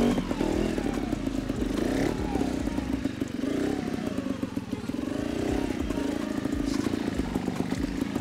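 Trials motorcycle engine being blipped and eased off as the bike is ridden slowly up over rocks, its note rising and falling over and over.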